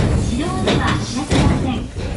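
People's voices inside a train carriage, with two sharp knocks or thumps, the first about two-thirds of a second in and the second about one and a half seconds in.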